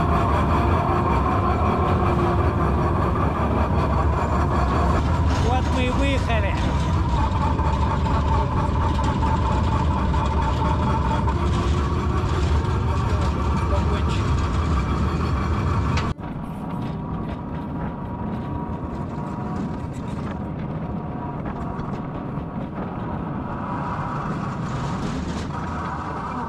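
Coal-mine tour car running on its rails: a steady low rumble with a thin steady whine over it. The rumble drops suddenly about two-thirds of the way through and goes on more quietly.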